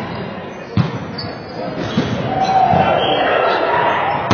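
Volleyball struck by players' hands and forearms during a rally in a large gym: a sharp smack under a second in, then a lighter one about two seconds in, each echoing in the hall.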